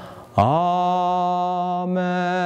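A man's voice chanting long, steady held notes. It falls quieter at the start, then comes in on a new sustained note with a slight rise into the pitch.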